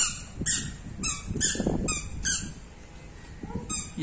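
Squeaker shoes on a toddler chirping with each step, about two short high squeaks a second, pausing briefly before one more near the end.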